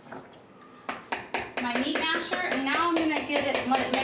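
Quick, regular clicks of a utensil knocking against a stainless steel stand-mixer bowl, about four a second, starting about a second in, with a woman's voice sounding over them without clear words.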